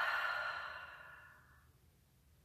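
A woman's long, audible exhale through the mouth, the slow out-breath of a deep breath, fading away over about a second and a half.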